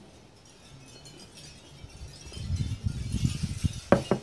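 A person drinking beer from a glass, with a run of low swallowing gulps in the second half. Just before the end there is a short knock as the glass is set back down on a wooden table.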